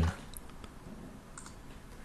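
Two faint computer mouse clicks about a second apart, over quiet room tone.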